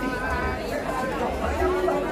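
Several voices talking and chattering at once, with faint music underneath: a few held tones and two low thuds.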